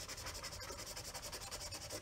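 Washable marker tip scribbling rapidly back and forth on paper, a faint, even scratchy rubbing of quick shading strokes.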